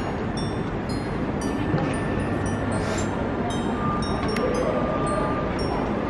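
Steady ambient hubbub of a busy glass-roofed shopping arcade: a continuous low rumble and murmur, with a faint held tone near the end.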